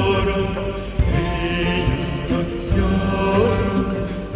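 Background music of long held notes, with a few slight bends in pitch, over a steady low bass.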